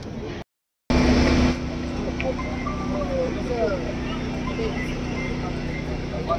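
Steady low hum of an idling vehicle engine under scattered voices of a crowd. The audio cuts out for about half a second near the start, then comes back louder for a moment.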